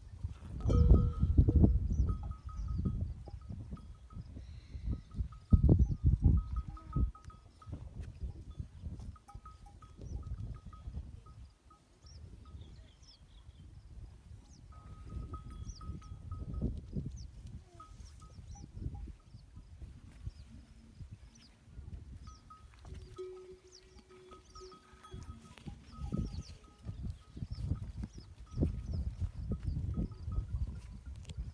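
Rural outdoor morning ambience: low gusts of wind buffeting the microphone, small birds chirping, and, a little past two-thirds of the way through, a goat or sheep bleating once for about a second and a half.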